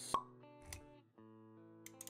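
Intro music with plucked notes, marked by a sharp pop just after the start and a smaller click about halfway through.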